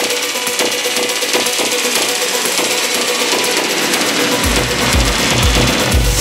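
Afro house DJ mix with a steady beat, played from a Pioneer DJ controller; the bass is missing at first and the low end comes back in about four and a half seconds in.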